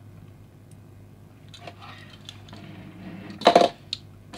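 A small plastic and diecast pullback toy car being handled and flipped over onto a mat, with light rustling and then a short sharp clatter about three and a half seconds in, followed by a small click.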